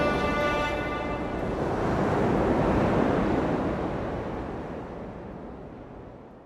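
A rushing noise effect closing a pop song: the last held musical notes die away in the first second and a half, the rush swells about two to three seconds in, then fades out.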